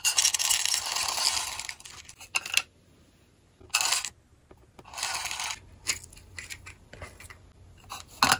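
Flat polymer clay beads poured from a clear plastic container into the compartments of a plastic bead organizer, a dry rattling patter. There is one long pour over the first two seconds, then several short pours and a few light clicks.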